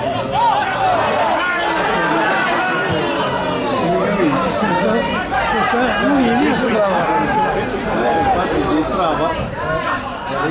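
Several people talking over one another close to the microphone, a steady babble of spectators' chatter.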